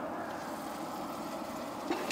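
Fan-assisted wood-burning rocket stove running: a steady whir of its blower fan and the forced-draft fire under the pot. A metal ladle knocks once against the aluminium pot near the end.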